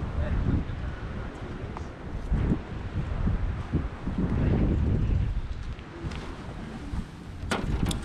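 Wind buffeting the microphone: an irregular low rumble that swells and fades. A few sharp clicks come near the end.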